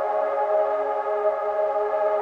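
Novation Peak/Summit polyphonic synthesizer playing a held ambient pad chord: several steady tones sustained together with a slight waver, recorded straight from the synth.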